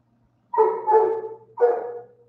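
A dog vocalizing twice: two drawn-out calls, each under a second, the second starting just after the first ends.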